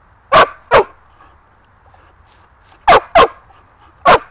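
A dog barking: two quick, sharp barks near the start and two more near the end.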